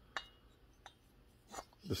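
Two bare metal chainsaw cylinders, a Husqvarna 266XP and an Echo 670, handled together, giving a light click just after the start and a fainter one near the middle; otherwise quiet.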